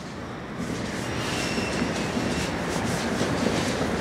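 Steady rushing, rumbling noise of a passing vehicle, swelling over the first second and then holding, with a faint high-pitched whine partway through.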